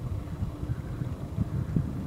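Road and wind noise from a moving vehicle: an uneven low rumble with wind buffeting the microphone, and no clear engine note.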